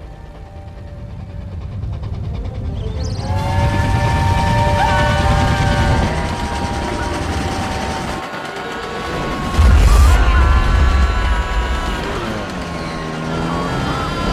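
Steam locomotive whistle blowing in long blasts, several steady tones sounding together, starting about three seconds in. A loud low rumble of the train cuts in near ten seconds, over a film score.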